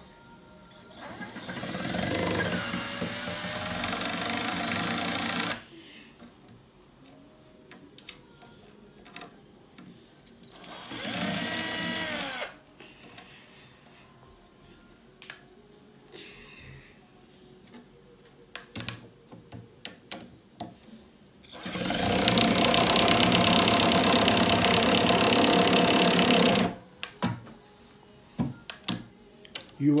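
Cordless drill-driver running in three bursts, the first and last about four to five seconds long and the middle one short with its pitch rising and falling, as screws are worked in OSB board. Between bursts there are small clicks and knocks of the drill and board being handled. In the last burst the bit spins loose on the screw head because it is not seated in the slot.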